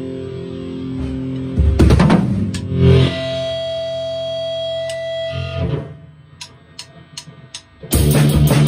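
Distorted electric guitar: two strummed chords, then a long held chord that fades out about six seconds in. Near the end, a run of quick, sharp clicks, about four a second.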